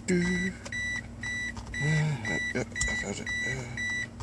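Car's electronic warning chime beeping steadily, a single high tone about twice a second, heard inside the cabin.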